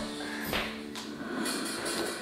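Background music playing from a television, with held notes that fade out about half a second in.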